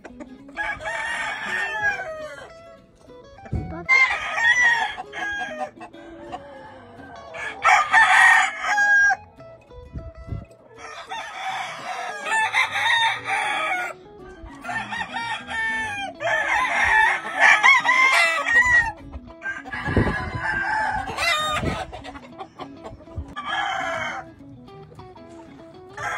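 Gamefowl roosters crowing again and again: about eight separate crows, each one to two seconds long, a few running into one another.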